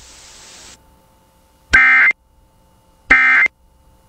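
Emergency Alert System end-of-message data bursts: two short, harsh buzzing bursts of SAME digital tones, about 1.3 s apart. They mark the end of the alert. A hiss stops under a second in, before the first burst.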